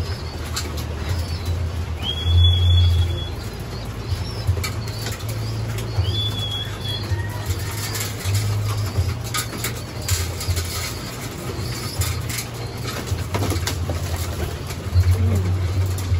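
Racing pigeons flapping their wings in short flurries as they crowd in to feed at close range, with scattered clicks of beaks pecking seed and occasional cooing. Two brief high whistled notes come about two and six seconds in.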